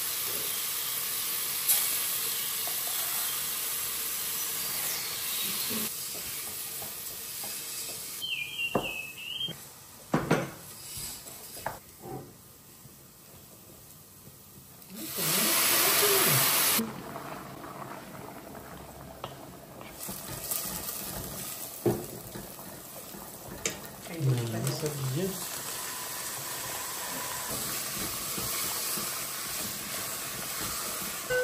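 Raw rice frying in hot oil with onion and garlic in a pot, sizzling and hissing as it is stirred with a wooden spoon, with a few light knocks of spoon on pot. About halfway through, water poured into the hot pot gives a loud rush of hiss and bubbling for about two seconds, then a quieter simmer.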